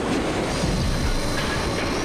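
Steady loud rumbling and clattering from a cinema ride film's soundtrack, like a cart running fast along rails, as the ride rushes out of a tunnel.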